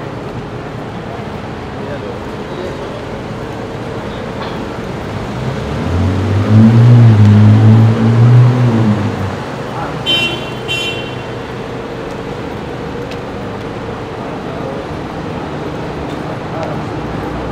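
Street traffic hum, with a motor vehicle passing close by midway: its engine swells loud for about four seconds, then fades. Two short high chirps follow soon after.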